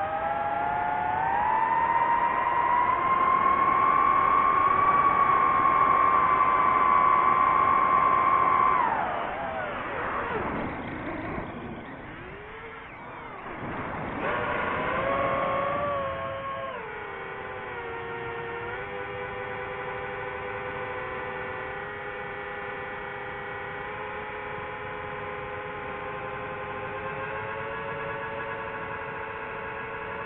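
DJI FPV quadcopter's motors and propellers whining at high throttle. The pitch climbs over the first few seconds and holds high, drops sharply about nine seconds in, and wavers up and down for several seconds. It then settles to a lower, steady whine.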